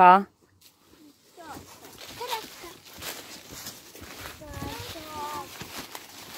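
Children's voices chattering and calling over footsteps and rustling in dry fallen leaves as they search the forest floor. An adult voice says a word right at the start.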